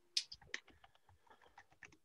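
Faint typing on a computer keyboard: a handful of scattered key clicks, the first and loudest about a fifth of a second in.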